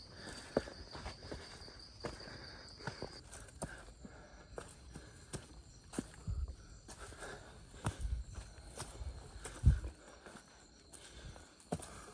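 Footsteps climbing a rocky trail: irregular scuffs and knocks of shoes on stone, with low bumps. A steady high insect trill fades out about three seconds in.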